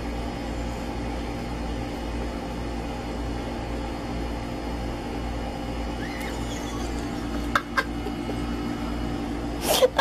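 Steady low hum with faint steady tones above it. Two short clicks come about three-quarters of the way in, and a sudden loud burst comes just before the end, where laughter begins.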